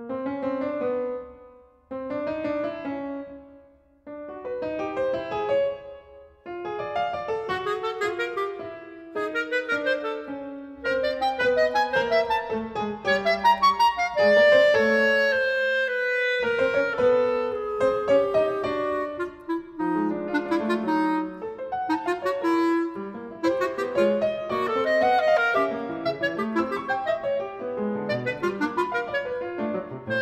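Clarinet and piano playing a 20th-century classical sonata movement. It opens with short phrases separated by brief pauses, then runs on continuously and louder, with a long falling melodic line in the middle.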